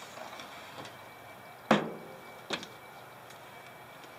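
Pickup canopy's rear glass lid being raised and propped open on a wooden stick: a sharp knock a little under two seconds in, then a lighter one about a second later. The lid has no support struts, so it rests on the stick.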